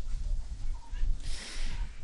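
A pause in a man's talk: a low steady hum, with a soft breath drawn in during the second half.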